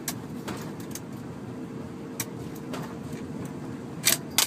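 Old minivan idling, a steady low rumble, with a few light clicks and a faint steady hum that stops near the end.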